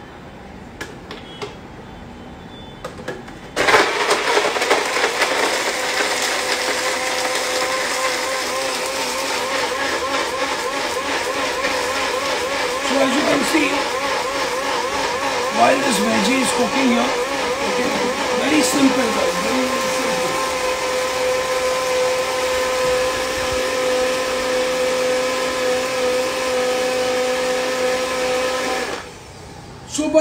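Electric blender grinding fresh coconut, green chillies, cumin and curry leaves with a little water into a fresh coconut-milk paste. It starts suddenly a few seconds in, and its whine wavers in pitch for a while as the load shifts. It then runs steady and cuts off shortly before the end.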